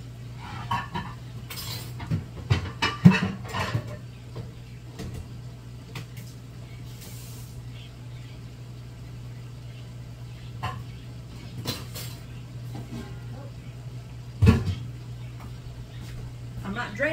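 Metal cooking pots clattering and knocking as a large pot is taken out and handled, busiest about two to four seconds in, with a single sharp clank near the end, over a steady low hum.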